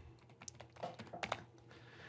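Faint typing on a computer keyboard: a handful of short key clicks, spread over the first second and a half.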